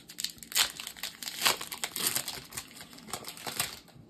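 Foil booster pack wrapper being torn open and crinkled in the hands: a quick, irregular run of crackles and crinkles.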